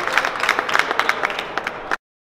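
Audience applauding, many hands clapping irregularly, thinning slightly before it cuts off suddenly near the end.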